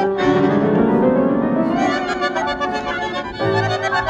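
1942 recording of an Argentine tango orchestra, with violins and piano. A rising run climbs through the first two seconds, then the orchestra plays quick, clipped chords.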